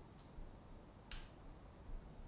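Near-silent room tone broken by a single sharp, short click about a second in, with a much fainter click just before it.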